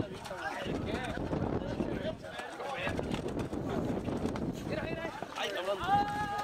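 Indistinct voices of riders talking, with wind on the microphone. Near the end comes one long, steady, high-pitched call.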